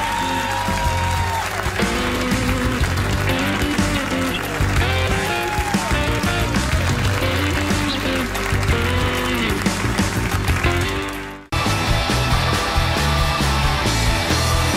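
Talk-show house band playing an upbeat rock instrumental, with sliding lead notes over a steady bass line. The music cuts off abruptly about eleven and a half seconds in, and another band number starts straight after.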